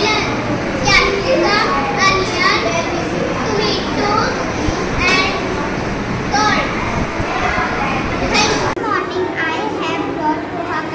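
Children's voices: a child speaking, with other children chattering around.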